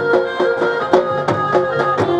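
Live Gujarati folk dance music for raas garba: a dhol drum beats a steady rhythm, about three to four strokes a second, under a sustained keyboard-led melody.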